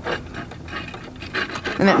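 Light metal rubbing and small clicks as the presser-foot ankle is worked off a sewing machine's presser bar by hand.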